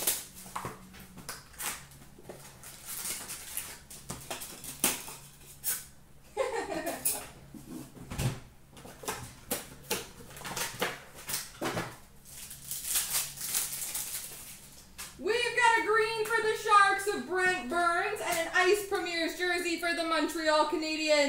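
Plastic shrink-wrap and card packs crinkling and tearing as a hockey card box is unwrapped and opened by hand, a run of sharp crackles. From about fifteen seconds in, a person's voice comes in and carries on.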